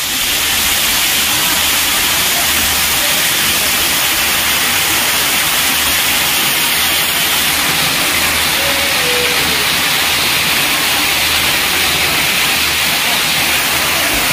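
Water gushing from a stone spout and splashing into a temple tank close by: a loud, steady rush.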